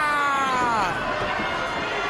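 One long, excited shouted exclamation that falls in pitch over about the first second, over the noise of an arena crowd.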